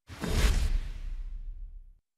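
A whoosh sound effect with a deep rumble under it. It swells in just after the start, peaks at about half a second, then fades away and cuts off. It is a news programme's transition sting between stories.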